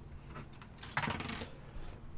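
A short, faint clatter of clicks from a computer keyboard about a second in, with a lone click just before the end.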